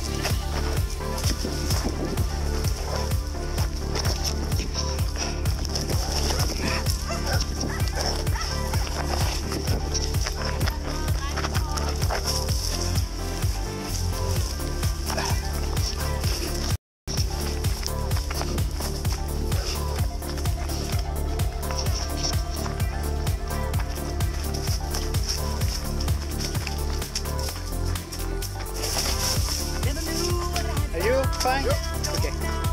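Music with a steady beat and deep bass notes, cut off by a brief moment of silence about halfway through.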